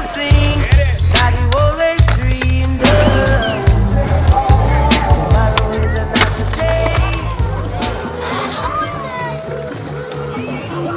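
Skateboard on concrete, with wheels rolling and the board popping and landing in sharp knocks, under a loud music soundtrack with a heavy bass line. The bass drops out about eight seconds in.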